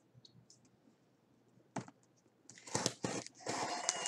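A cardboard package being opened by hand: faint small ticks, a sharp click a little under two seconds in, then a run of scratchy rustling and scraping of the packaging.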